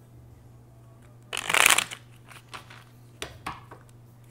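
A deck of tarot cards shuffled by hand: one loud burst of shuffling lasting about half a second, a little over a second in, followed by several short card clicks.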